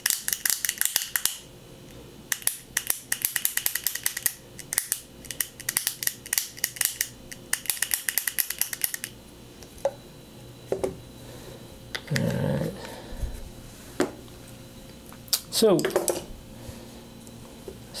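SRAM Force 22 DoubleTap road shifter's ratchet mechanism clicking in quick runs as the lever is pumped over and over, working fresh wet lube into the internals. The clicking stops about nine seconds in, leaving only a few scattered handling knocks.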